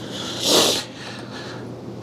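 A short breath out through the nose, close to the microphone, about half a second in and lasting about half a second.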